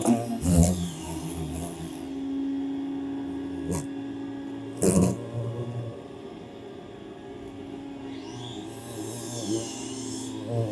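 Knocks and scraping from a wooden birdhouse being handled: a few at the start and a loud knock about halfway through, over a steady low hum.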